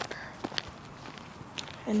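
Footsteps of a person walking, a few short sharp steps over a low steady background hiss, with a voice starting at the very end.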